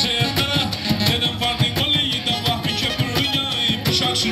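Black Sea kemençe bowed in a fast, wavering tune over keyboard accompaniment with a steady, quick beat.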